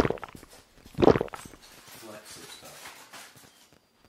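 Sucking a thick matcha bubble tea with coffee cubes up a wide straw: two loud slurps about a second apart, then quieter mouth sounds.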